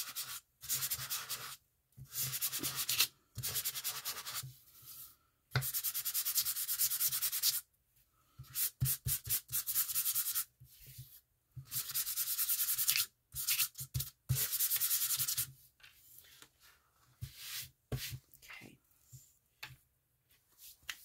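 A folded sheet of sandpaper rubbed by hand over a slightly glossy printed card, roughing its surface so glue will hold. It comes in runs of quick back-and-forth strokes, each a second or two long with short pauses between. Near the end the strokes give way to fainter, scattered rustling.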